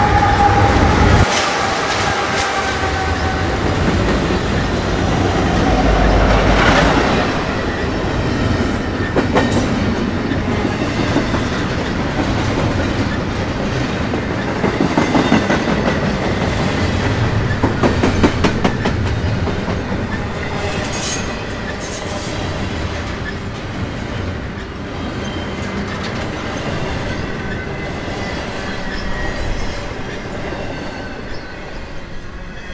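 Freight train passing at close range, diesel locomotive first, then a long string of intermodal well cars carrying highway trailers. Wheels click steadily over the rail joints, with a faint thin wheel squeal from the curved detour track.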